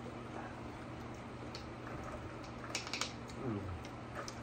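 Thin plastic water bottle being handled, giving a few short crinkling clicks a little before three seconds in, over a steady low room hum. A short falling 'mm' from a voice follows just after.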